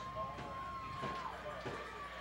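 Stadium crowd background at a football game, with faint distant voices and one steady note held for about a second near the start.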